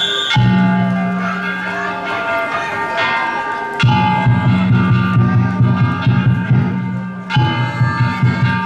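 Danjiri float's taiko drum and hand gongs (kane) playing festival music: metallic bell-like ringing over a quick, steady drumbeat that grows markedly louder about four seconds in.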